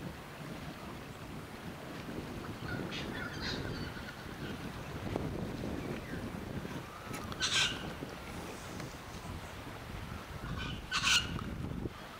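Wind rumbling on the microphone, with a bird giving short calls: a few faint ones about three seconds in, then a louder one past the middle and another near the end.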